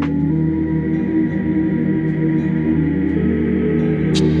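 Ambient background music with long, steady held tones.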